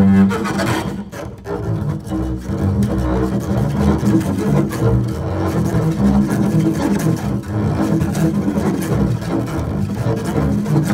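Solo double bass played with the bow in free improvisation: a dense stream of short, scratchy strokes over low notes.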